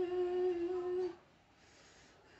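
A woman's voice holding one steady moaning hum on a single note, which cuts off about a second in. The sound comes during a stiff person syndrome attack.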